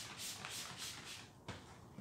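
Brush scrubbing a leather car seat in quick, even back-and-forth strokes, about four or five a second, stopping a little after a second in; a single sharp click follows.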